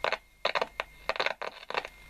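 Short bursts of crackle, about six in two seconds, from a Roberts RT22 transistor radio's speaker as a signal-generator lead is brought near its circuit board, over a faint steady high whistle.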